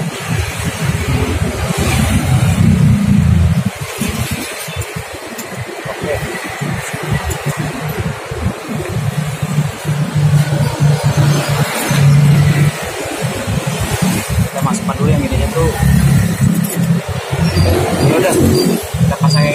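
Low engine hum of vehicles running nearby, swelling and fading over several seconds, with faint clicks of rubber hose and metal parts being handled.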